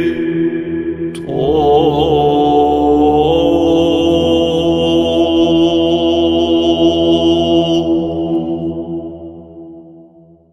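Orthodox church chant: voices sing a long, slow phrase over a steady held drone note, then fade out over the last couple of seconds.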